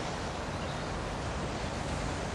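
A steady, even hiss of background noise, with no distinct events.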